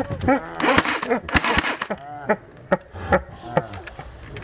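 Men crying out and shouting in short, pitched yelps that rise and fall, with scattered sharp clicks between them. The loudest shouting comes in the first two seconds. These are pained cries from men just hit by airsoft BBs fired at over 350 fps.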